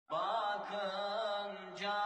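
Chanted vocal music: a voice holding long notes that waver slightly in pitch, starting suddenly at the opening, with a new phrase beginning near the end.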